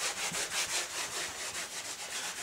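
A felt whiteboard eraser wiping marker off a whiteboard, rubbing back and forth in quick repeated strokes, several a second.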